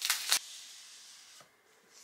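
Apple Pencil's cardboard box being handled: a quick rasping rub in the first half-second that fades off, then a small tap about a second and a half in.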